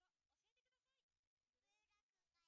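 Near silence: the sound almost drops out, leaving only very faint traces of voices.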